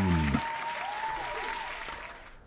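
Recorded applause with faint music under it, fading away. A voice's last falling word ends just after the start.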